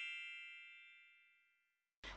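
The ringing tail of a bright, bell-like chime sound effect on a section title card, decaying evenly and dying away about a second in.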